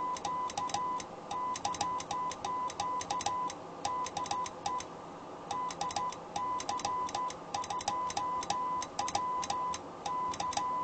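Morse code (CW) sidetone, a steady tone of about 1 kHz keyed on and off in dits and dahs, with a sharp click at many of the keying edges, as CW is sent through the linear amplifier into a dummy load.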